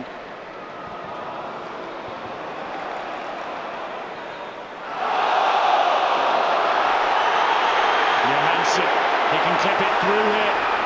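Football stadium crowd noise, steady at first, then swelling suddenly about halfway through and staying loud as the visiting side attack.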